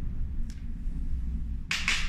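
Small lock parts being handled: a light click about half a second in, then a brief rustle as parts are picked up from a paper sheet near the end, over a low steady room hum.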